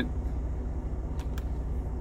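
Steady low drone of the Freightliner semi tractor's engine idling, heard inside the cab, with two faint clicks a little past the middle.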